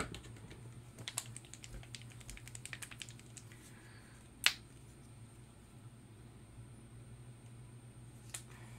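Typing on a computer keyboard: a sharp click at the start, then a quick run of key clicks for a couple of seconds, and one louder single click about halfway through.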